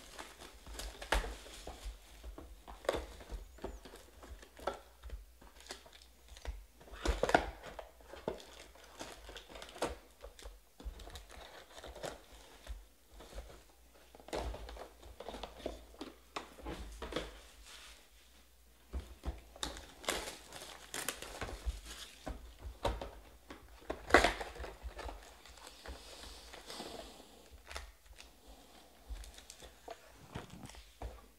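Clear shrink wrap being torn off trading-card hobby boxes and foil card packs being handled: irregular crinkling and rustling, with sharper loud snaps about 7 and 24 seconds in.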